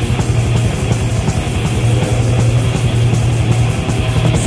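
Death/thrash metal band playing a fast instrumental passage on a cassette demo recording: distorted guitar and bass hold a steady low drone over rapid, even drumming, with no vocals.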